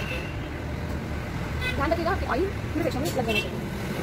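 Steady low rumble of road traffic, with a voice speaking briefly around the middle.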